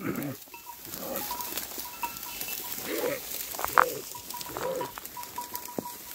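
A flock of sheep bleating a few times, faint and spread out, with a thin high ting repeating several times a second.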